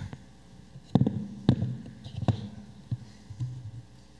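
Four dull thumps from a microphone being handled, spread unevenly over about two seconds, over a faint hum, while the room works on a microphone that Zoom listeners could not hear.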